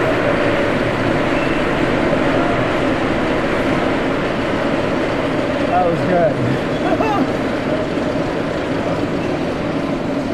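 Steady murmur of indistinct voices with no clear words, with a few brief louder voices about six and seven seconds in.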